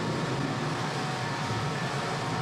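Jet aircraft engines running on an aircraft carrier's flight deck during engine starts for a launch: a steady, dense rush of engine noise with a faint steady whine over it.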